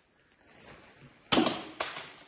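A thrown rock striking hard inside a cave: one sharp crash about a second and a third in, then a second, smaller knock half a second later, with no echo.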